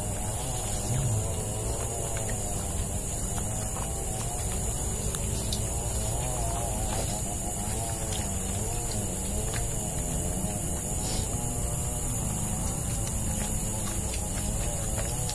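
Steady high-pitched buzzing of forest insects over a low rumble, with faint wavering tones running through it.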